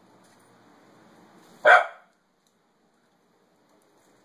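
A corgi barks once, a single loud, sharp bark a little under halfway through. The bark comes from its agitation at a recording of wolves howling.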